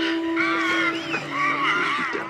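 Horror film soundtrack playing on a screen: a held low tone for about the first second, with wavering, moaning pitched sounds over it, then a lower held tone.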